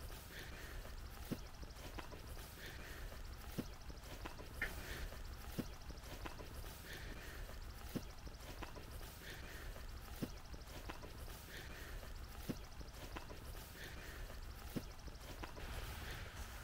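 Faint footsteps through tall grass at an even walking pace, about one step a second.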